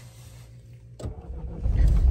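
Car engine starting: a click about a second in, then the engine catches and runs low and steady near the end.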